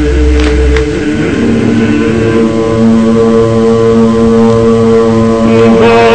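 Orthodox church choral chant: slow, long notes held steady, with a wavering sung voice coming in more strongly near the end.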